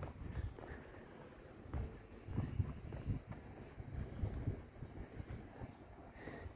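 Outdoor street ambience with wind rumbling irregularly on a handheld phone's microphone, plus a faint steady high-pitched tone.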